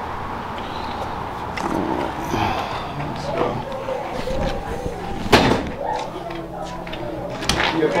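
A door banging shut with a loud thump about five seconds in, then a second, sharper door knock near the end, with indistinct voices in the background.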